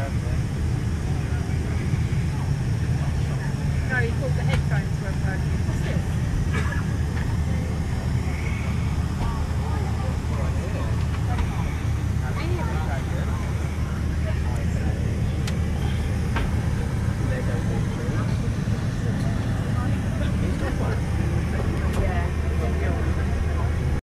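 Steady low rumble of airliner cabin noise inside a Boeing 747's upper deck, engines and air flow holding an even level, with faint voices of other passengers in the background.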